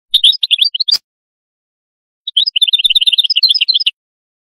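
European goldfinch singing: a short burst of rapid twittering notes in the first second, then, after a gap of over a second, a longer run of fast chattering notes lasting about a second and a half.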